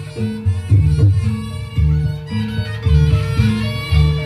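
Loud Reog Ponorogo gamelan accompaniment: drums beat out a rhythm under a held tone, with a reedy melody, typical of the slompret shawm, bending up and down from about three seconds in.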